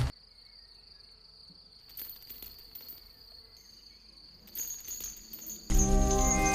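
Faint steady high-pitched trilling of night insects such as crickets, with a few soft knocks. Near the end, loud music with sustained notes starts suddenly.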